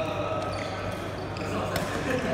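Background chatter of several voices in a badminton hall, with a few sharp taps from the courts, the loudest one near the end.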